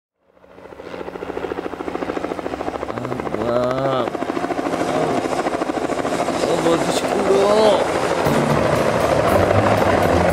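Helicopter rotor chopping in a fast, even beat, fading in from silence and growing steadily louder.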